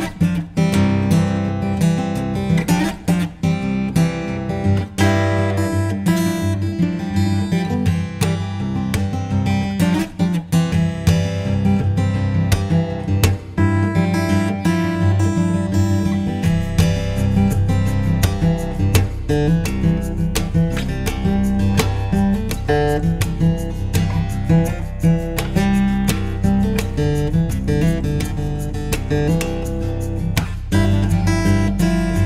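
Steel-string acoustic guitar in CGDGBE tuning (the bottom two strings lowered to C and G), fingerpicked in a quick, continuous flow of notes over ringing bass strings. The deepest bass notes grow stronger from about halfway through.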